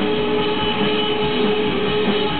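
Rock band playing live at high volume: distorted electric guitar holding a steady droning chord over the drums.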